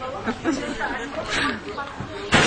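Only speech: quieter conversational talk.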